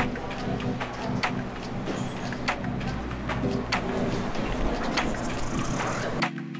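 Ambience of a cable car station: a steady low machinery hum with irregular clicks and clatter.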